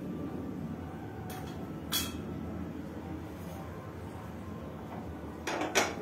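Steady low hiss of spices frying in ghee in a nonstick kadhai on a lit gas burner, with a light clink about two seconds in. Near the end come two sharp metallic knocks as the pan is gripped by its handles and shifted on the burner grate.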